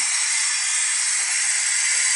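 Steady hiss from the engine bay of a Datsun Go during a carbon-cleaner engine treatment, the intake drawing air and cleaner while the engine runs.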